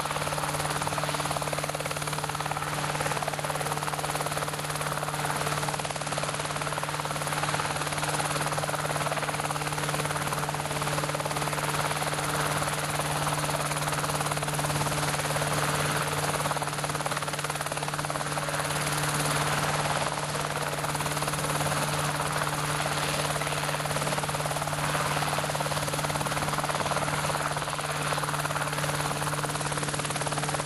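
RotorWay Exec 90 light helicopter hovering low, its piston engine and rotor running at a steady drone with a constant low hum and no change in pitch or level.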